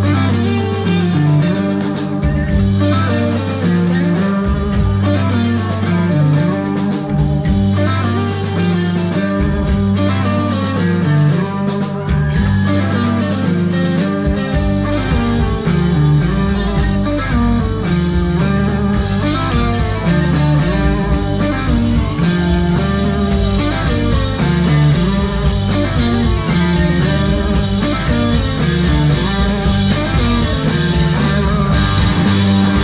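A live blues-rock band plays: two electric guitars, electric bass and drum kit. About halfway through the full band comes in harder, with steady drum and cymbal hits under the guitar riff.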